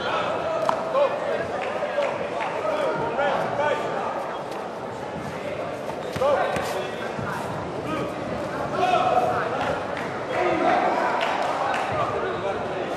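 Several voices shouting around a kickboxing bout, with scattered thuds of blows and footwork on the padded mat.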